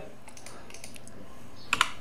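Two quick clicks of a computer keyboard key close together near the end, over a steady low background hiss.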